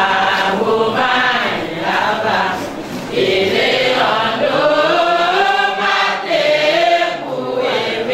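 Group of voices singing a Tiv-language worship hymn without instruments, in long held notes with short pauses between phrases.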